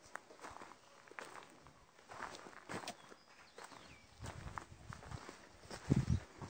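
Irregular footsteps and scuffs on a hard, wet pen floor, with a louder low thump near the end.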